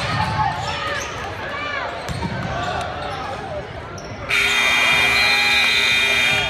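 Sneakers squeaking and a basketball bouncing on a hardwood gym floor amid crowd chatter, then about four seconds in the gym's scoreboard buzzer sounds, a loud steady horn lasting about two seconds.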